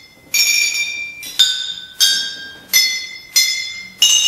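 A row of green glass beer bottles played as percussion, struck one at a time: five strikes, each ringing with a bright, bell-like pitch that fades before the next, the bottles sounding different notes.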